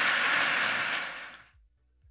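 Audience applauding, fading out and ending about a second and a half in.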